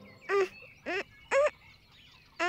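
Three short, high-pitched straining grunts from a cartoon butterfly character tugging at a stuck kite, each rising and falling in pitch, about half a second apart.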